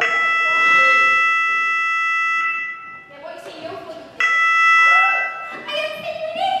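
An electronic bell or buzzer tone, like a doorbell sound effect, rings twice, starting suddenly each time. The first ring lasts about two and a half seconds and the second, after a short gap, about a second and a half. Voices are heard between and after the rings.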